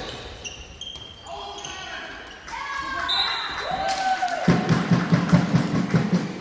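Court shoes squeaking on the sports-hall floor in short high chirps, some sliding in pitch, echoing in the large hall. Near the end comes a quick run of thuds from running feet and the bouncing handball.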